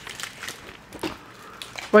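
Faint crinkling of plastic snack wrappers being handled, in a lull between voices; a woman starts speaking at the very end.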